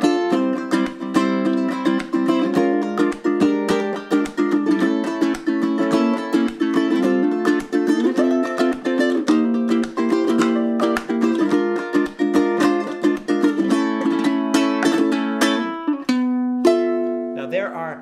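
Ukulele played in a rumba flamenco strum, a fast, rhythmic eight-stroke pattern of index-finger and thumb strokes with percussive palm-muted hits, moving through a chord progression. Near the end it stops on one ringing chord.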